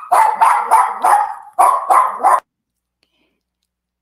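A dog barking about seven times in quick succession, stopping about two and a half seconds in.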